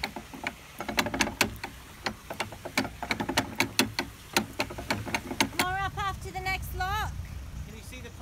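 A quick, irregular run of sharp clicks and knocks at the lock-side gear for about five seconds. Then a narrowboat's diesel engine runs low and steady, with a few short squeaky glides over it.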